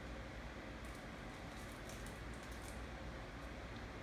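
Low steady background hiss of room tone, with a few faint small clicks.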